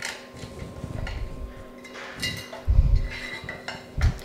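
Metal clinks and dull knocks as a gas stove's burner mounting plate is worked loose and lifted out of the stove's metal frame, with the loudest thump about three seconds in.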